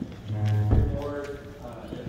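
Indistinct men's talk in a large room, with a loud low thump close to the microphone about three quarters of a second in.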